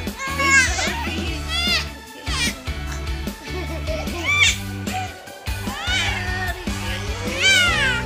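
A baby squealing and crying in about six short, high-pitched cries that rise and fall, over background music.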